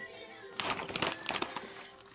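Plastic snack bag of pretzel crisps crinkling as it is handled, a run of sharp crackles starting about half a second in, over faint background music.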